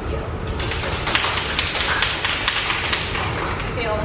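A small group clapping: a run of irregular sharp claps starting about half a second in, with voices under it.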